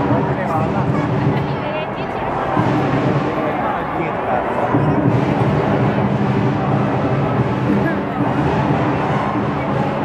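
Marching-band brass and drums playing held notes over the chatter of a street crowd.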